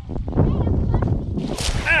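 A thrown cast net coming down over the microphone, its lead-weighted edge splashing into shallow water with a sudden hiss about one and a half seconds in. Wind rumbles on the microphone throughout, and a startled shout starts just at the end.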